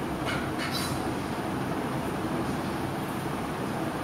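Steady low rumble of background room noise with a faint hiss, and two brief soft hissy sounds within the first second.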